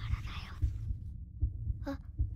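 Heartbeat sound effect: repeated low thumps, with a breathy rush in the first half second. It stands for the girl's nervous tension.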